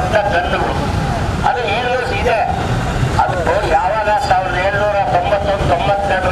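A man's speech into a handheld microphone, with a steady low rumble underneath.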